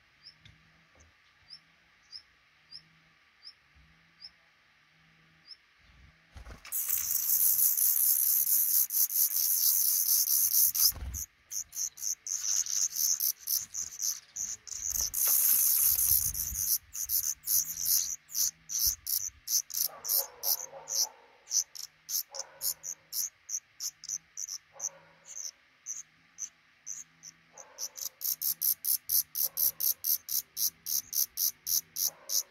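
Black redstart nestlings begging: a very high-pitched, rapidly pulsing chorus that breaks out about six seconds in as a parent comes to feed them, loudest in two long bouts, then going on in short pulsed bursts. Before it starts there are only faint high ticks about twice a second.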